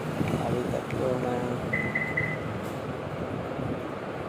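Indistinct background voices over a steady background noise, with a short high beep in three quick pulses about two seconds in.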